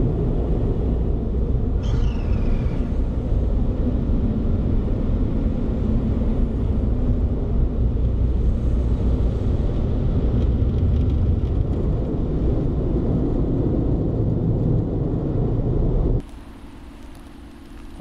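Automatic car wash's air dryers blowing, a steady loud rumble heard from inside the car's cabin, with a brief falling whistle about two seconds in. The rumble cuts off suddenly near the end, leaving a quieter steady hum.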